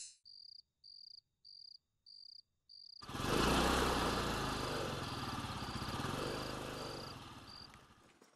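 Crickets chirping in an even rhythm, about five chirps in the first three seconds. About three seconds in, a motorbike's engine comes in loud and rumbling and fades slowly as it passes, with the crickets still chirping faintly.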